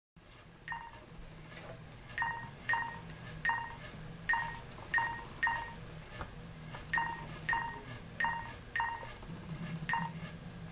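Mobile phone keypad beeping as keys are pressed one at a time: about a dozen short beeps, all the same pitch, at uneven intervals.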